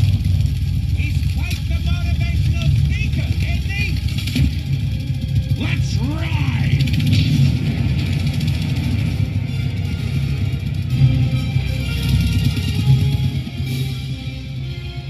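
Film soundtrack: a loud, steady low rumble with music over it, and a few short vocal cries in the first half.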